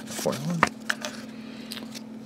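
Pokémon trading cards handled in the hands: a few sharp clicks and taps as the stack is sorted and set aside. A low steady hum runs underneath.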